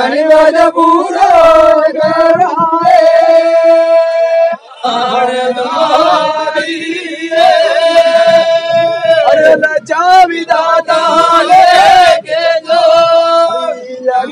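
Men singing a Gavri folk song of Mewar together in a loud chant-like line of long held notes, with a short break about a third of the way in.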